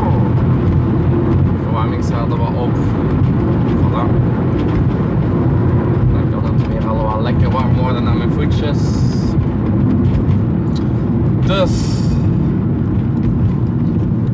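Steady engine and road noise heard from inside the cabin of a small van while it drives.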